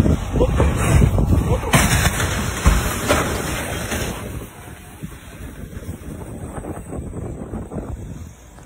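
Vehicle collision in an icy highway pileup: a sharp crash about two seconds in, then a heavy thump, as a truck slams into the wrecked vehicles, over wind and road noise on the microphone. It quietens after about four seconds.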